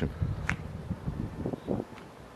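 Wind buffeting the camera microphone outdoors, an uneven low rumble, with a brief higher sound about half a second in.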